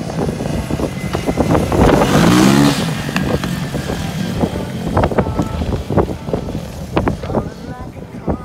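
Small quad (ATV) engine running as it rides past close by, its pitch rising briefly about two seconds in as it speeds up, with clicks and knocks along the way.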